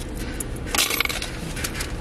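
Short clatter of items being handed through the car window about a second in, with a few lighter clicks after it, over the car's low steady hum.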